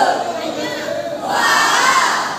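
Several voices shouting loudly over crowd noise, in long drawn-out yells that rise and fall in pitch.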